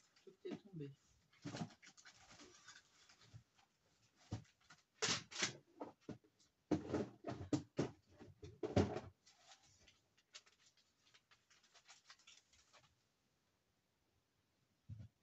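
An irregular run of knocks, clicks and rustles from rubber stamps and their storage box being rummaged through and handled, with louder clatters about five seconds in and between seven and nine seconds.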